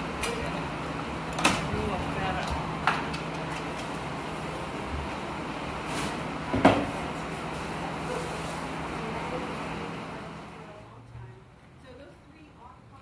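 Steady whir of an electric box fan with a low motor hum, broken by several sharp knocks, the loudest about two-thirds of the way through. The whir falls away near the end.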